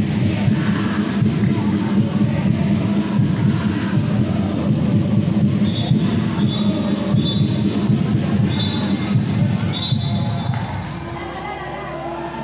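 Loud music with a dense low beat over crowd noise, echoing in a large sports hall, with a few short high tones repeating in the middle; the beat drops away about ten and a half seconds in.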